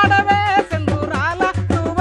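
Telugu folk song: a voice singing a melody with wavering, gliding notes over a steady drum beat and deep bass pulses.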